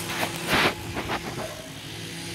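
An engine idling with a steady low hum, and a brief rustling burst about half a second in.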